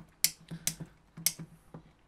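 Handling clicks from a 3D-printed plastic panel holding a power inlet and rocker switch: three sharp clicks with a few fainter taps between them.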